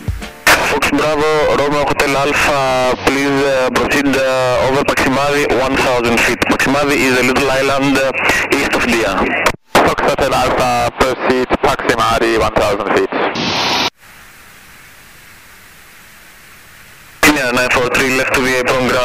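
Air traffic control radio voices, thin and cut off in the treble like a VHF transmission. Near the end they give way to about three seconds of steady radio hiss before the voices return.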